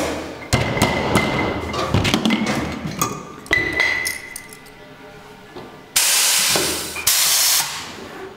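A rubber mallet taps plastic bidules into the necks of glass sparkling-wine bottles, with sharp knocks and glass clinks. Near the end come two loud hisses of compressed air, about a second apart, from a pneumatic crown capper.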